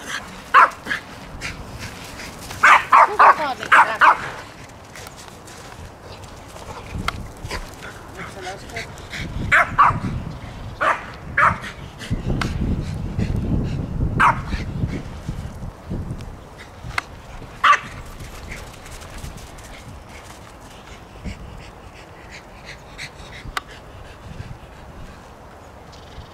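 Dogs barking at play: a quick run of several sharp barks about three seconds in, then a few scattered single barks and yips over the following seconds.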